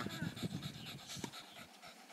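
Boston terrier panting softly, getting fainter in the second half.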